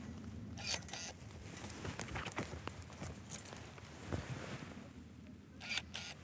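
Pruning shears cutting grapevine canes: a couple of sharp snips about a second in and another pair near the end, with light rustling and small clicks of the wood and wire in between.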